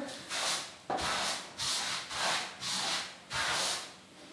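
A wide block brush's bristles sweeping limewash paint across a wall, in about six even strokes of roughly half a second each, as the edges of a third coat are feathered out.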